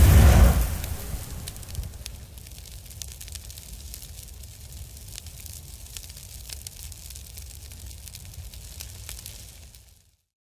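Fire sound effect: a loud burst at the start that dies away over about two seconds, then a low rumble of flames with scattered crackles until it cuts off suddenly at the end.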